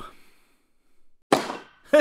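A single sudden cartoon impact sound effect, a quick thud that fades within about half a second, about a second and a half in: a quarter note landing in its box.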